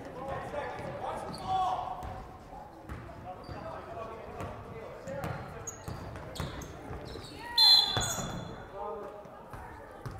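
Basketball game in an echoing gym: players' and spectators' voices with a basketball bouncing on the hardwood court. A short, shrill, high-pitched sound about three-quarters of the way through is the loudest thing heard.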